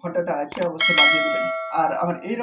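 A bell-like chime sound effect from a subscribe-button animation strikes about a second in and rings out, fading over about a second. A man's voice is heard before and after it.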